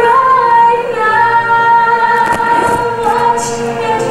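A woman's voice singing a show tune in long, held notes over musical backing.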